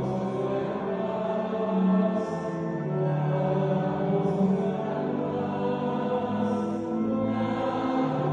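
Slow devotional chant sung on long, held notes, with the pitch moving every second or two.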